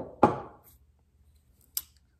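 Grey PVC pipe parts being handled at a workbench: two sharp plastic knocks in quick succession at the start, the second louder, then a light click near the end.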